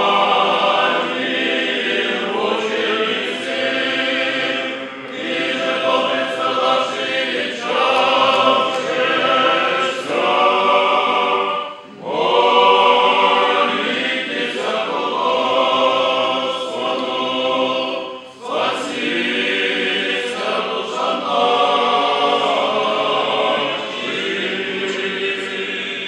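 Orthodox church choir singing unaccompanied liturgical hymns in long phrases with brief breaks between them, sung while a candidate is led to the altar during a priest's ordination.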